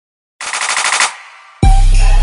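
A short burst of rapid machine-gun fire sound effect, about a dozen shots in well under a second, trailing off; then a trap beat drops in with heavy deep bass about a second and a half in.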